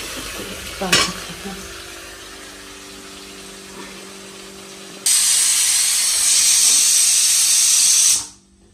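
A metal spoon knocks once against an aluminium pressure cooker while mutton is stirred, then a low steady hum. About five seconds in, steam starts to hiss loudly and evenly from the closed pressure cooker's vent as it builds pressure on the gas burner, and stops abruptly at the end.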